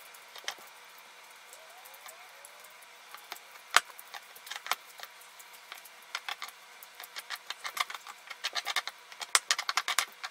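Stone pestle mashing guacamole in a basalt molcajete: irregular clicks and knocks of the pestle against the stone bowl. One sharp knock comes a few seconds in, and the tapping grows quicker and busier in the second half.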